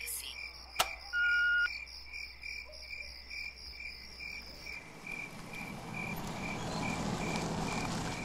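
Crickets chirping in a steady pulsing rhythm. About a second in there is a sharp click and a short electronic beep. From about five seconds the low noise of a car pulling up rises.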